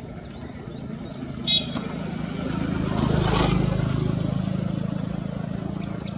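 A passing motor vehicle: a steady low engine hum that builds to its loudest about halfway through and then slowly fades. A brief high-pitched call sounds about a second and a half in.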